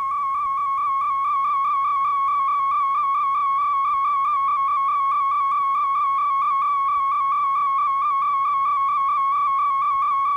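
A steady, high, whistle-like electronic tone that warbles evenly in pitch about four to five times a second, from videotape playback after the recording has ended.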